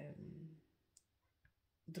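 Near silence with one short, sharp click about halfway through and a fainter click soon after.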